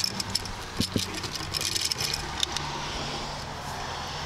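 Light clicks and rattles of a GFCI outlet and screwdriver being handled at an electrical box, thickest in the first couple of seconds, over a steady low engine-like hum in the background.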